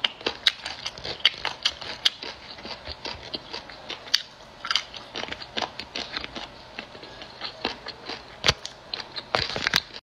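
Close-up eating sounds: crunchy chewing and biting, with many sharp crunches and clicks and the crinkle of the plastic bag as the food is handled.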